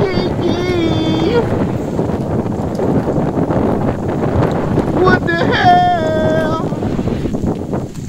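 A loud, rushing noise like wind on the microphone, with a person's drawn-out, wavering cries near the start and again about five seconds in. The sound cuts off suddenly at the end.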